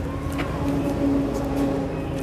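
A steady motor hum, like an engine running nearby, with a single sharp click about half a second in.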